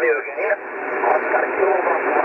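Upper-sideband voice reception on the 2 m band from an Icom IC-9700 transceiver's speaker: a station's voice in steady hiss, muffled with nothing above about 2.7 kHz. The voice trails off about half a second in, and fainter speech continues under the hiss.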